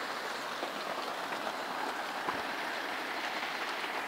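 Steady rain falling, an even continuous hiss with a few faint ticks of drops.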